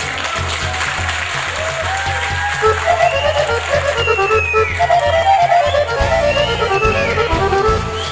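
Piano accordion playing a melody on stage over a steady low bass accompaniment, with a few high sliding tones about halfway through.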